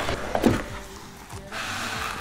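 Zipper of a fabric gimbal carry case being pulled open, with a few soft handling knocks, then a steady zipping rasp near the end.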